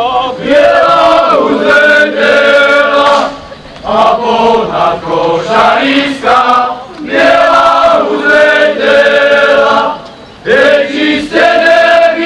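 Male chorus singing a Slovak folk song in phrases of about three seconds, with short breaks between phrases.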